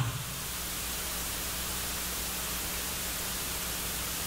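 Steady even hiss from the sound system's noise floor, with a faint low steady hum underneath.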